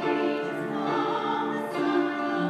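A soprano and an alto singing a duet together, holding long, sustained notes in harmony.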